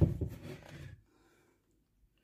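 The plastic lid of a Thermomix TM6 food processor being lifted off its stainless mixing bowl: handling clatter that fades out within the first second, then near silence.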